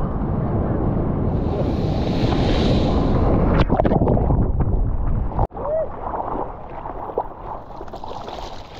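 Breaking-wave whitewater churning over and around a surfer's action camera: a loud rushing wash with heavy rumble on the microphone. About five and a half seconds in the sound cuts out abruptly, then continues as a quieter splashing of water along the surfboard.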